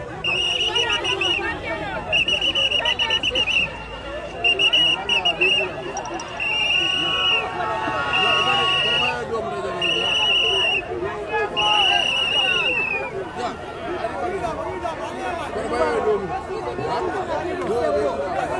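A whistle blown in seven trilling blasts of about a second each, coming every second or so through the first two-thirds, over the chatter and shouting of a large crowd.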